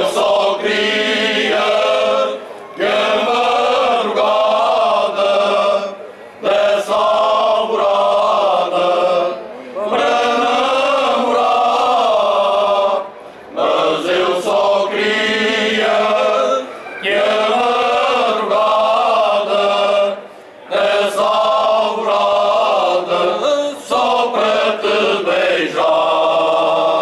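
Men's choir singing cante alentejano without instruments: long, slow phrases sung together in harmony, broken by short pauses for breath every few seconds.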